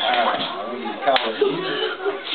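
Toy lightsabers striking each other with one sharp plastic clack about a second in, over several people talking.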